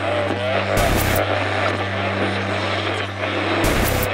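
Sound-design bed under the title animation: a steady low droning hum beneath a dense, engine-like rumble. It is broken by two short noisy swooshes, about a second in and again near the end, that go with the graphic transitions.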